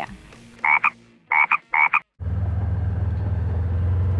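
Three short calls in quick succession, then, after a sudden break, a vehicle's engine running steadily with a low hum.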